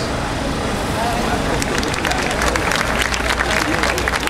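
Crowd voices, then applause from a large crowd that starts about a second and a half in and thickens, over a steady low rumble.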